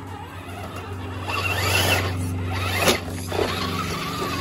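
The brushed electric motor and gear drivetrain of a 1/10-scale HPI Venture Toyota FJ RC rock crawler whining under throttle as it climbs rock, with the tyres scrabbling on the stone. The sound swells from about a second in, with a sharp click near the end.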